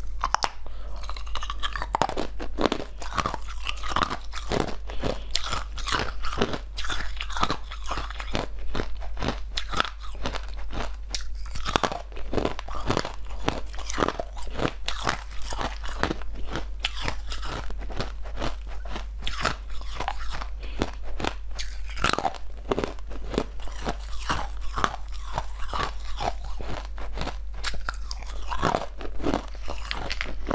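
Chunks of ice being bitten and chewed close to the microphone: a dense, irregular run of crisp crunches and cracks that keeps going throughout.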